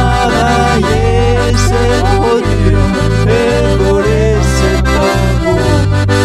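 Band music in an instrumental break of a Cajun song: an accordion carries the melody over a steady bass line.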